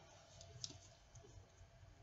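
Near silence with a few faint clicks, the clearest a little over half a second in: a plastic wrestling action figure being handled and turned over in the hands.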